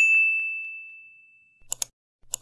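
Sound-effect ding: a single bright bell tone that strikes at once and fades away over about a second and a half, followed near the end by a quick double click, the kind of notification-bell and mouse-click effect laid over a subscribe-button animation.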